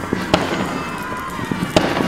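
Muskets firing in a battle line: two sharp shots about a second and a half apart, one a third of a second in and one near the end, with fainter shots between.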